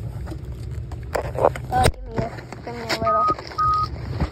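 Rustling handling noise ending in a sharp click about halfway through, over a low car-cabin rumble that then drops out, followed by two short electronic beeps at one steady pitch.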